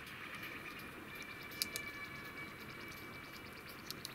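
Quiet room with a faint steady high tone, and two small clicks about a second and a half in from fingers handling the metal shells of a pair of in-ear monitors.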